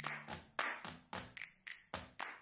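Cardboard toilet paper roll, its rim wet with paint, stamped again and again onto cardstock on a table: a run of light, irregular taps, about three or four a second.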